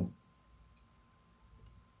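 Near silence of a small room, broken by one brief, sharp high click a little past the middle, with a fainter tick before it.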